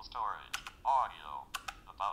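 Sharp clicks of the BT Speak's braille keys being pressed to scroll down a menu, with the device's synthesized voice reading short bursts of menu items between the presses through its small built-in speaker.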